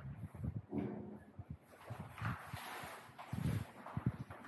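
Footsteps of high-heeled shoes on a tiled floor, a run of uneven knocks.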